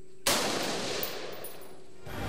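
A single gunshot, sudden and loud about a quarter of a second in, its noise dying away over more than a second.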